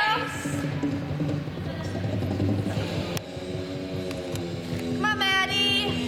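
Gymnastics floor-exercise music playing, with voices from the crowd underneath; a high, bending call stands out about five seconds in.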